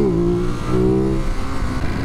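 Ducati Monster SP's L-twin engine, breathing through its Termignoni exhaust, running at steady revs. Its note dips briefly in pitch at the start, then holds level.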